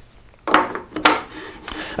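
A wooden setting-gauge jig being handled on a table saw top and slid toward the miter slot: a few sharp knocks and clicks over a rubbing scrape.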